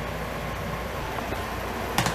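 Steady low mechanical hum of room background noise, with a sharp click right at the end.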